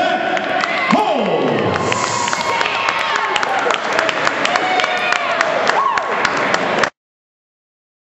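Crowd cheering and clapping for the winner of a fight, a dense run of handclaps with shouts and whoops rising and falling over it; it cuts off suddenly near the end.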